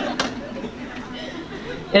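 Audience murmuring and chuckling softly in a large hall, with one sharp click shortly after the start.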